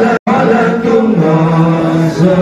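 Voices chanting a religious song together in long held notes, with a brief gap in the sound just after the start.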